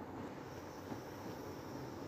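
Faint steady hiss of a kadhai of semolina, sugar and water heating on the stove, not yet at the boil.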